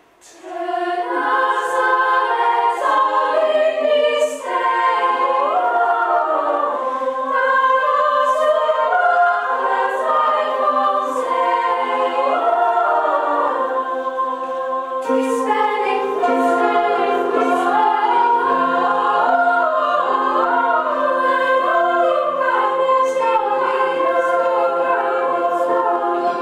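A choir of girls and young women singing in several parts, coming in just after a moment's quiet at the start; the sharp 's' sounds of the sung words stand out above the held chords.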